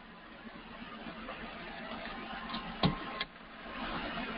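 A few sharp clicks at a computer over a faint steady hiss. The loudest comes nearly three seconds in and a second follows a moment later.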